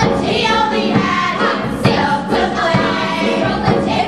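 A chorus of girls singing a stage-musical number together over a backing track with a steady beat.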